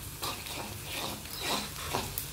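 Minced garlic sautéing in melted butter in a wok, with a spatula stirring and scraping across the pan in short, irregular strokes over a faint sizzle.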